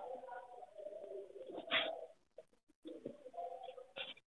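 Pigeon cooing, faint and low-pitched, in two drawn-out phrases, the second starting about three seconds in.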